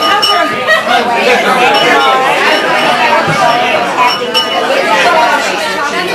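Many people talking at once in a crowded room, party chatter, with glasses clinking now and then.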